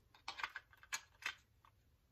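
Small plastic clicks and scrapes as a camera battery is slid and fitted into its plastic charger, several quick ticks in the first second or so, then quieter.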